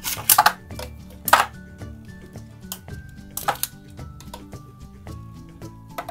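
Two Beyblade Burst spinning tops launched into a plastic stadium, giving a few sharp clacks as they hit the stadium floor and knock together, over background music.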